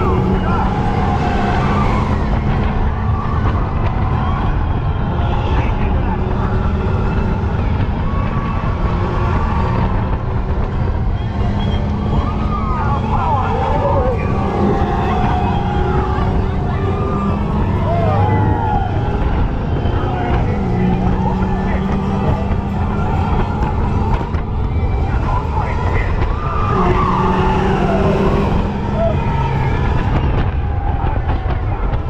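Steady rush of wind and track noise from a fast-moving Radiator Springs Racers ride vehicle, with a low hum coming and going and riders shouting a few times, most around the middle and near the end.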